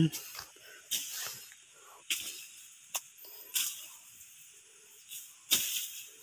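Bolo (machete) slashing through grass and brush undergrowth: about six short swishing cuts at uneven intervals, the strongest near the end.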